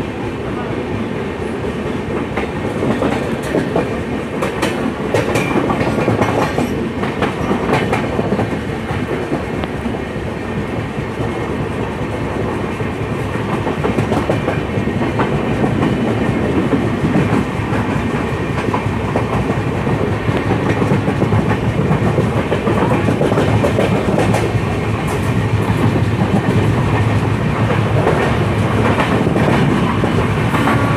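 Sarnath Express passenger train running along the rails, heard from aboard the moving coach: a steady rumble of wheels with clickety-clack over the rail joints, growing a little louder through the stretch.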